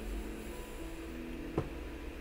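Quiet room tone: a low steady hum with faint steady tones over it, and one short click about one and a half seconds in.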